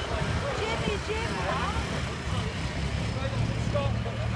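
Vehicle engines idling as a low, steady rumble, with people's voices talking and calling over it.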